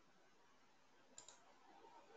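Near silence: faint room hiss, with one faint double click about a second in.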